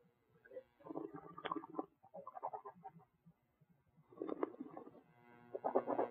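Mouth noises of wine tasting: a sip of red wine drawn in and gurgled and swished over the tongue in several soft bursts, ending with the wine spat into a stainless steel spit bucket.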